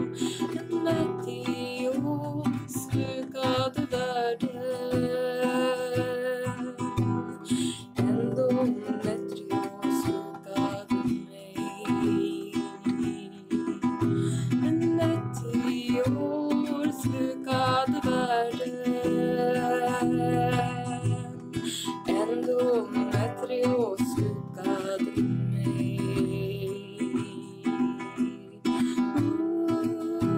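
Acoustic guitar strummed and picked steadily in a folk song, with a voice singing over it at times.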